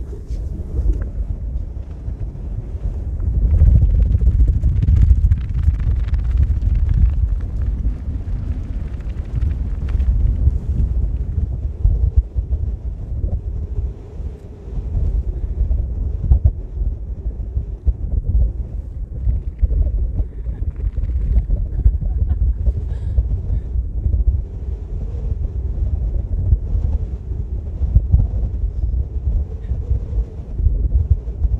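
Wind buffeting the camera microphone in uneven gusts, a deep rumbling blast that is strongest a few seconds in.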